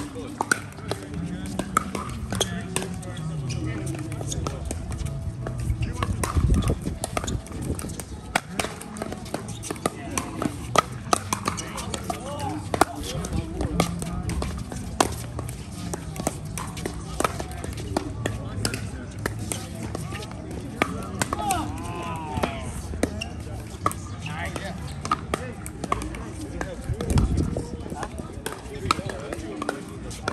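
Pickleball rally: paddles hitting the ball and the ball bouncing on the court, many sharp pops at irregular intervals, over background voices.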